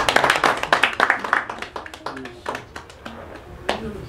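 Quick hand clapping, dense for about the first second and a half and then thinning out, with voices alongside. A single louder sharp strike comes near the end.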